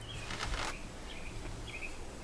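Quiet room tone with a couple of faint, brief high-pitched chirps.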